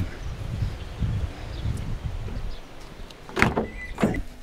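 Low rumbling noise, then, about three and a half seconds in, the driver's door of a Toyota HiAce van is unlatched and pulled open with one sharp, loud click.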